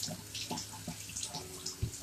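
Faint running water at a kitchen sink as cut red potatoes are rinsed, with small clicks of handling and a soft low thump near the end.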